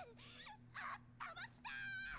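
A young woman's high-pitched anime voice, faint and low in the mix, in about five short cries that bend up and down, the last one held. It is an angry outburst in Japanese.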